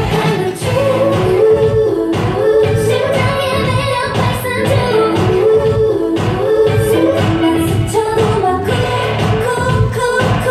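Upbeat K-pop dance song with female singing over a steady beat, played loud for a stage performance.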